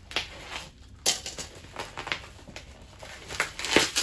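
Plastic-and-bubble-wrap parcel crinkling as it is cut with a box cutter and torn open by hand, with several sharp crackles, the loudest near the end.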